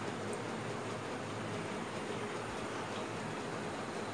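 Steady background noise: an even hiss with a faint low hum underneath, unchanging throughout.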